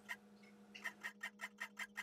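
A rapid, even series of faint clicks, about seven a second, starting a little before one second in, over a low steady hum.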